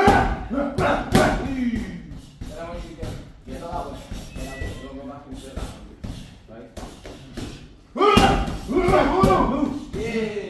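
Boxing gloves thudding into focus mitts, a series of irregular sharp hits, with men's voices calling out over them, loudest at the start and again about eight seconds in.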